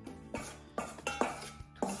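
A spoon clinking and scraping against a stainless steel mixing bowl while stirring dry ingredients (flour, salt, baking powder), about four clinks roughly half a second apart, over background music.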